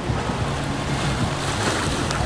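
Steady wash of waves churning against the rocks, with wind buffeting the microphone.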